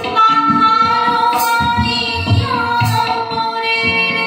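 A woman singing a song to her own harmonium accompaniment. The harmonium holds steady reed tones under the melody.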